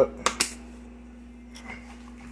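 Two sharp clicks in quick succession about half a second in as the lid of a grated Parmesan container is snapped open, over a faint steady hum.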